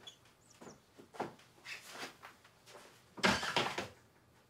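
Clothes and a fabric bag being handled: a string of rustles and soft knocks, with the loudest, longer rustle about three seconds in. A bird chirps faintly about half a second in.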